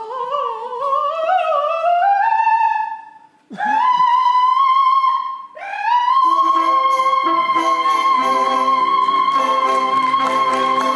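An operatic soprano voice sliding upward in wavering swoops, then holding a long high note; after a brief break she swoops up again to another long high note while an orchestra comes in underneath.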